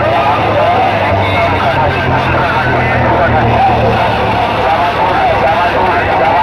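Loud, distorted sound from a DJ sound system's stacked horn loudspeakers: a wavering, voice-like line over a steady low bass, with no breaks.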